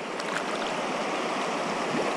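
Shallow water sloshing and splashing steadily around a big flathead catfish held at the surface.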